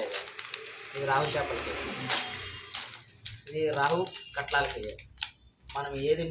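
Plastic bags of powdered fishing bait mix being handled: crinkling and rustling, densest in the first half, with scattered sharp crackles of the plastic.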